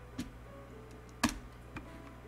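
Three short computer clicks from keyboard keys and a mouse button, the loudest a little over a second in, over faint background jazz.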